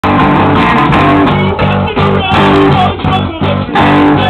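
Live rock band playing loudly, with guitar to the fore.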